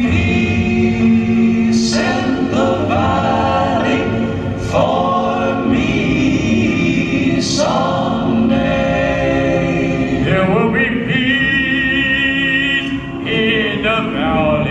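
A choir singing long held notes over an instrumental backing, in phrases a few seconds long, each opening with a slight upward slide in pitch.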